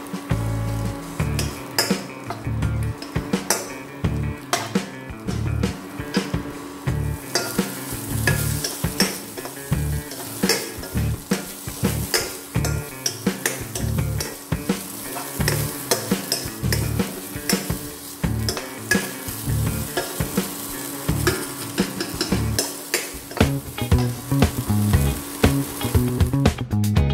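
Chopped okra sizzling in hot oil in a dark wok, stirred with a steel spoon that scrapes and clinks against the pan again and again.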